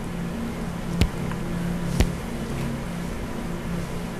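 Quiet room tone: a steady low hum with a faint hiss, and two sharp clicks a second apart.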